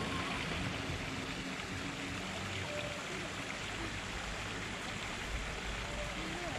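Steady rush of water running into a garden koi pond over rocks.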